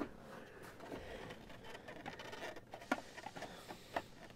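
Faint handling and scraping of a plastic steering-column cover as it is worked apart by hand, with a few light clicks, the clearest about three seconds in and just before the end.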